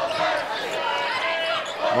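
Basketball game sounds on a hardwood court: several short sneaker squeaks over arena crowd noise.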